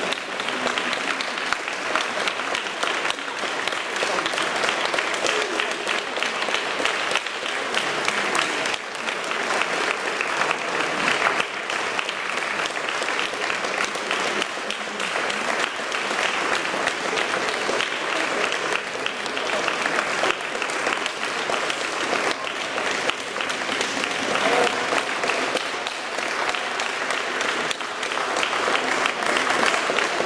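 Concert audience applauding, dense and steady, with a few voices among the clapping.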